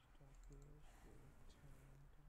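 Faint clicks of a computer mouse and keyboard keys as a URL is typed, over near-silent room tone. A low voice mumbles faintly underneath.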